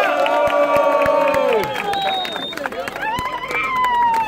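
Crowd cheering with long drawn-out shouts: a sustained shout that falls off after about a second and a half, scattered handclaps, then another long shout toward the end.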